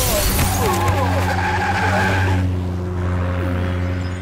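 Action-film crash sound effect: a loud burst of breaking glass and scattering debris that dies away after about two and a half seconds, under a low, held note of dramatic background music.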